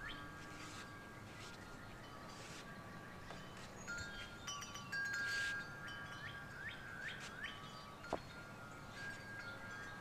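Wind chimes ringing faintly, several different tones struck now and then and left to ring on, overlapping one another. There is a single light click about eight seconds in.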